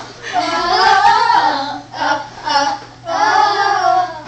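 Girls singing a song together without instruments, in long held phrases broken by short pauses.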